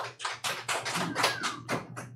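A few people clapping, quick even claps about seven a second.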